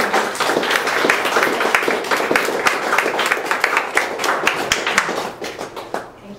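Audience applauding, the clapping thinning out and dying away near the end.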